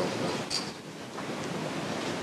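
Room tone: a steady background hiss between speakers, with one brief faint sound about half a second in.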